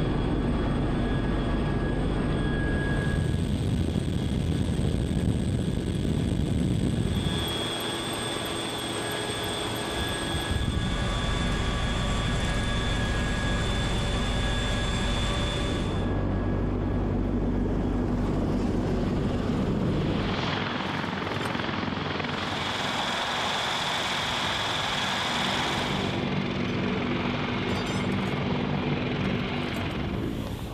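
CH-53K King Stallion heavy-lift helicopter running: steady rotor and turboshaft engine noise with a high, even turbine whine. The mix shifts abruptly every few seconds as the footage changes between views.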